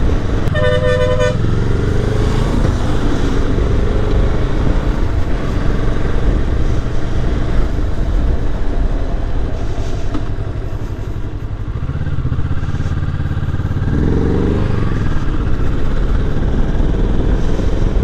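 Motorcycle engine running at road speed with steady wind rush on the mic. About half a second in, a vehicle horn gives one short toot.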